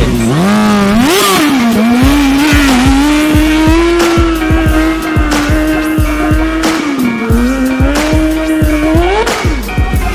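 Stunt motorcycle's engine revving up about half a second in, then held at steady revs through a wheelie, dipping briefly about seven seconds in and climbing again near the end. A music track with a steady beat plays underneath.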